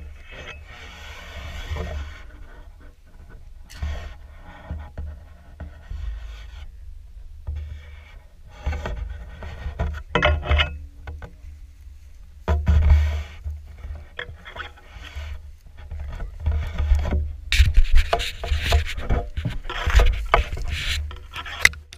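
Dry grass and reeds brushing and scraping against a head-mounted action camera as someone pushes through them, in irregular rustling bursts that grow busier near the end, over background music.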